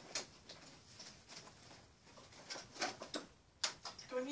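Light clicks and knocks of objects being picked up and handled, about seven of them spread out irregularly, the sharpest one near the end.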